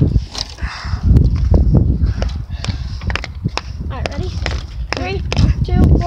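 Someone running over grass and dry leaves while carrying the phone: uneven footfalls and crunching with rumbling handling and wind noise on the microphone. A child's voice is heard briefly near the end.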